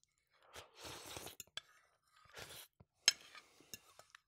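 A bite of soft food taken from a plate and chewed close to a microphone, in a few short bouts of mouth noise with several sharp clicks in between.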